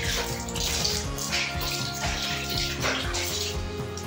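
Water splashing as soapy legs and feet are rinsed over a tiled floor, in several separate splashes through the first three seconds or so, over steady background music.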